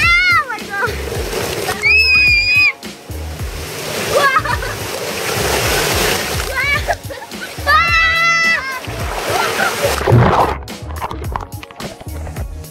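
Water splashing and rushing down a water slide, with children squealing high-pitched several times, over background music with a steady beat.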